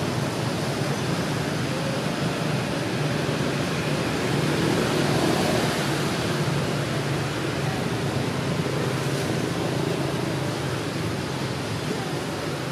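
A steady rushing noise with no distinct events, swelling a little around the middle.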